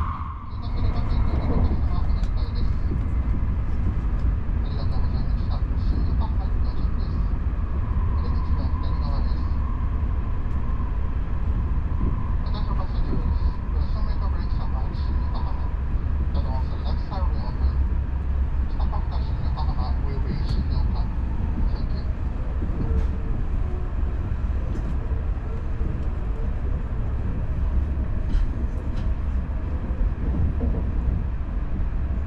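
Shinkansen bullet train running at speed, a steady low rumble of wheels on rail heard from inside the carriage.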